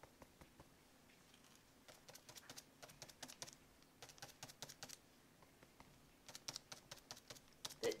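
Small stiff paintbrush dabbing black acrylic onto gesso-coated notebook paper: quiet, light taps in quick runs, with short pauses between runs.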